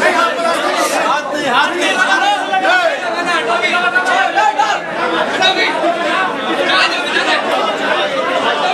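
A dense crowd of men talking and calling out all at once, many voices overlapping with no single speaker standing out.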